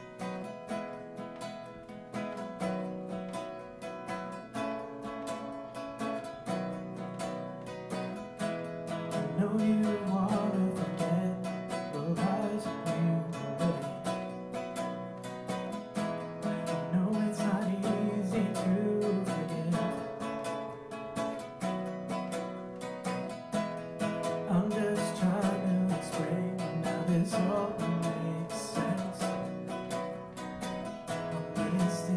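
Solo acoustic guitar strummed, with a man's voice singing along from about ten seconds in.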